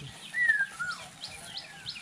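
Birds calling: a clear whistled note falling in pitch about half a second in, followed at once by a lower falling note, over a thin high chirp repeated about three times a second.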